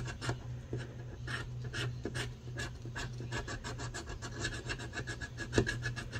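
A thin metal scratcher tool scraping the coating off a circle on a paper scratch-off savings card, in quick repeated strokes, several a second.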